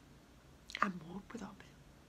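A woman's voice speaking a short, soft phrase, lasting about a second and starting just under a second in, with quiet room tone on either side.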